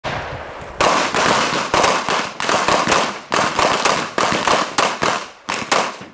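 Handgun fired in a rapid string at bowling-pin targets, the sharp shots following about three a second from about a second in, unevenly spaced and sometimes close together.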